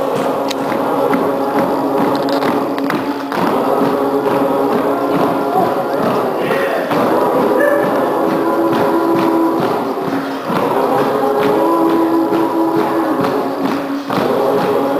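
Music: a group of voices singing held notes over a rhythmic percussive beat of hand percussion.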